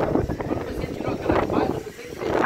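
Indistinct talking outdoors, with background noise.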